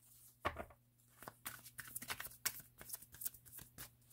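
A tarot deck being shuffled by hand: a string of quick, irregular soft clicks and slaps as the cards fall between the hands.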